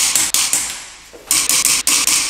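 Torque wrench ratcheting in quick bursts of clicks as wheel lug nuts are tightened: a short burst at the start and again a third of a second in, then a longer run of clicks in the second half.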